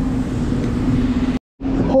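Road traffic: a motor vehicle running with a steady low hum and rumble, which cuts off abruptly about three-quarters of the way in.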